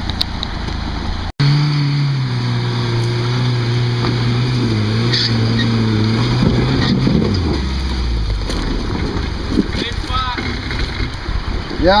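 Off-road truck's engine running hard under throttle as it crawls through a muddy creek hole, its pitch wavering and then dropping about seven seconds in as the throttle comes off.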